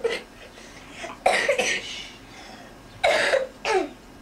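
A person coughing close to the microphone: two quick coughs about a second in, then another pair about three seconds in.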